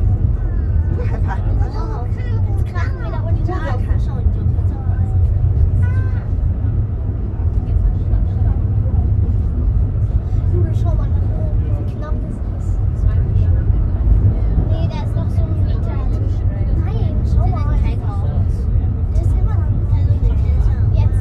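Heidelberg Bergbahn funicular car running down its track, a steady low rumble with no change in pace, with passengers' voices chattering over it.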